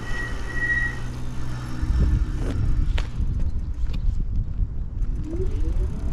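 Ride1Up Cafe Cruiser electric bike being ridden, with wind rushing over the microphone and tyre noise as a constant low rumble. A faint steady hum fades out after about two seconds, and there is a single sharp click about three seconds in.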